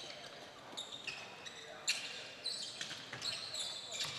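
Faint basketball court sounds: a series of short, high-pitched sneaker squeaks on the hardwood gym floor, with a basketball bouncing and one brief knock a little under two seconds in.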